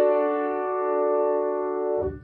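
Piano: a D chord in the left hand with the melody note D in the right, struck just before and held ringing steadily, then released near the end.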